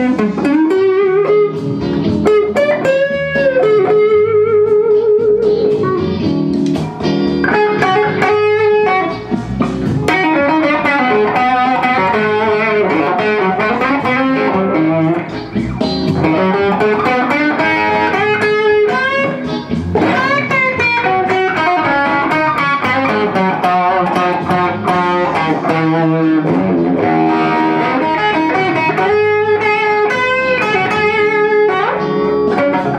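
Electric guitar played through a Bugera V22 valve combo amp set for a mildly overdriven tone: single-note lead lines with string bends and held notes with vibrato.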